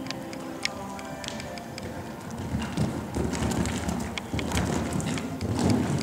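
Horse cantering on the sand footing of an indoor arena: dull hoofbeats that grow louder about halfway through, over faint background music.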